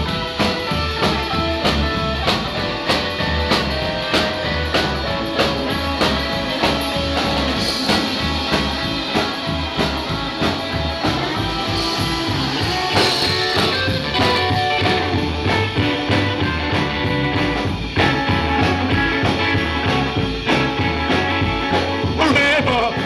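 Live rockabilly band playing: upright double bass, strummed acoustic guitar, electric guitar and drums, with a steady beat throughout.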